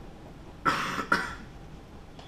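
A person coughing twice in quick succession, two short loud coughs about half a second apart near the middle.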